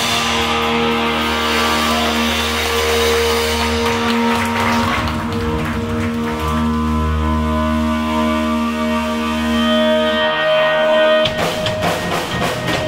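A rock band playing live. Electric guitars and bass hold long, ringing chords over a deep bass note with little drumming, then the drum kit comes back in near the end.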